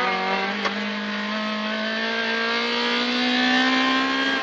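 Honda Civic rally car's engine heard from inside the cabin, pulling hard in one gear with its pitch climbing slowly as the car accelerates. A single short knock comes about two-thirds of a second in.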